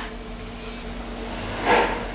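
Water at a rolling boil in a pot on a gas burner, with tomatoes and chiles in it: a steady bubbling hiss, with a brief louder rush near the end.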